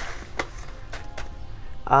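Paper being handled: a few soft clicks and rustles as a paper pouch is set down and a printed information sheet is lifted.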